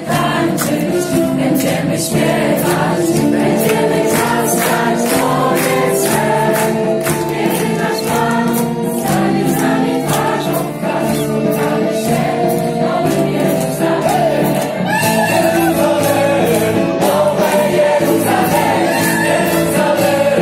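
A live band playing an upbeat Christian song with many voices singing together, over a steady beat of about two strokes a second.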